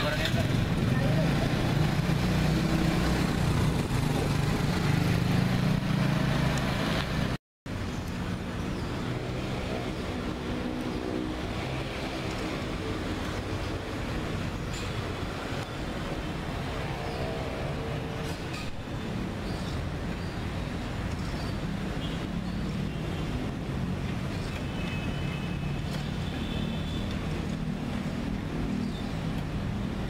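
Small motor scooter engines idling with a steady low hum. About seven seconds in the sound drops out for a moment, then comes back quieter as a steady scooter-and-traffic sound of a scooter riding along the street.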